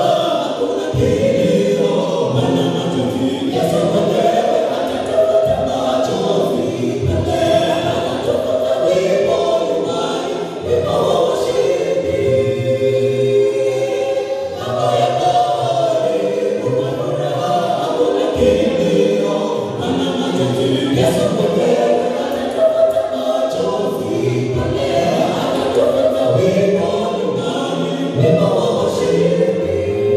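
A mixed group of men's and women's voices singing a Swahili gospel song in harmony, amplified through handheld microphones. The singing runs on without a break, with a steady low line beneath it.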